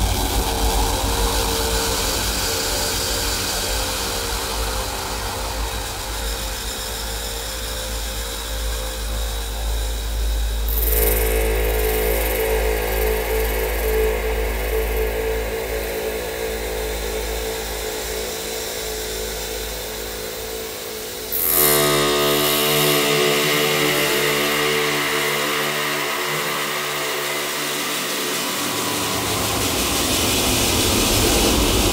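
Dark ambient noise music: layered droning tones over a low rumble and hiss. The texture changes abruptly about 11 seconds in, and again with a jump in loudness about 21 seconds in. The low rumble dies away near the end.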